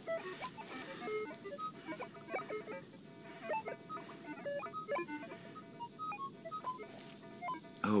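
Short electronic beeps at several different pitches, scattered irregularly: a multi-tone metal detector (Minelab Explorer SE Pro) chirping target tones. A few soft knocks are mixed in.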